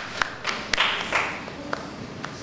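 A few scattered handclaps from an audience as the applause dies away, single claps spaced a fraction of a second apart.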